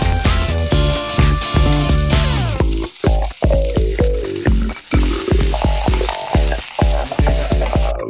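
Sliced shallots sizzling in hot coconut oil in a steel pan as they are pushed in with a wooden spatula and stirred; the hiss spreads in a couple of seconds in. Background music with a steady beat plays throughout.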